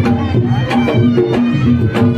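Traditional-style music: hand-drum strikes in a steady beat over held melodic notes.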